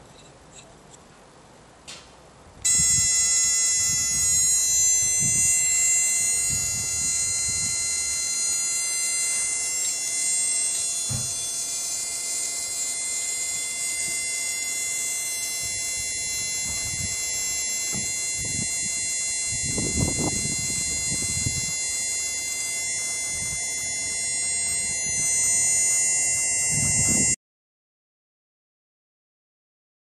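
A German WW2 radiosonde, just switched on, gives a steady high buzzing tone rich in overtones. The tone starts abruptly a few seconds in and cuts off suddenly just before the end. Low handling knocks sound under it.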